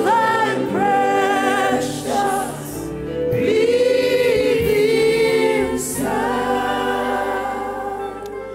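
A church worship choir singing slow gospel worship music, with long held notes that waver with vibrato.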